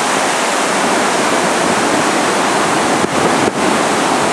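Steady, loud rush of turbulent white water in the river below the footbridge.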